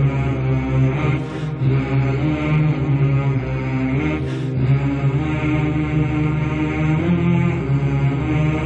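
A chant of long held low notes, one voice sustaining and slowly shifting pitch, with a short breath about a second in and another a little past four seconds.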